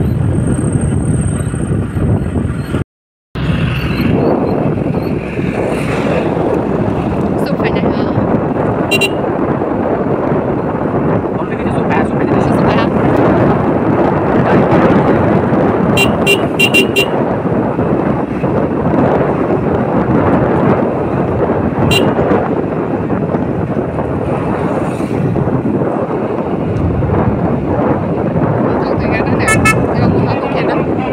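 Steady road and wind noise from a moving vehicle, cut off for a moment about three seconds in. Short horn toots sound several times: once about nine seconds in, a quick run of four around sixteen seconds, once more a little past twenty seconds and again near the end.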